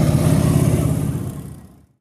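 Motorcycle engine rumbling as the bike rides past close by, fading out near the end.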